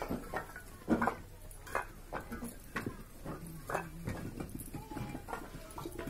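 Fired clay bricks clinking and knocking against one another as they are picked up and stacked by hand, a series of irregular sharp clinks with a short ring.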